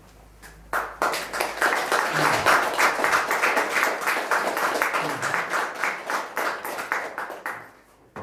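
Audience applauding, starting suddenly about a second in and dying away near the end.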